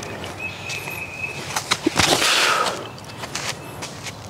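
A disc golfer's forehand drive off a concrete tee pad: a short rush of scuffing noise about two seconds in as the throw is made.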